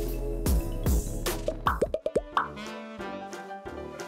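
Upbeat background music with a few quick, plopping cartoon pops in the first half, then a short cluster of rising glides about halfway through.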